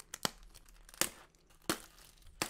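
Clear plastic shrink-wrap being torn and crinkled off a cardboard booster display box, with three sharp crackles.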